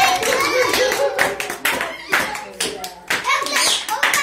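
Several people clapping their hands over children's and adults' voices.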